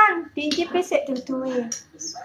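Only speech: voices talking, with no other sound standing out.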